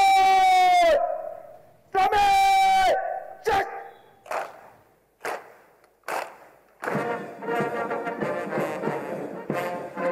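Bugle sounding two long held notes, each dipping in pitch as it is cut off, then a few short sharp notes. About seven seconds in, a military brass band strikes up and plays on.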